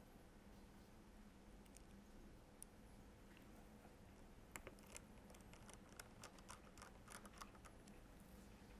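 Faint small clicks and ticks of a precision screwdriver tip engaging and turning tiny screws into a Samsung Galaxy S4's plastic midframe, a few scattered at first, then a quick irregular run of clicks in the second half as a screw is driven in.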